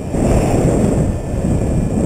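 Wind noise from air rushing over the microphone of a paraglider pilot's camera in flight: a loud, steady low rumble.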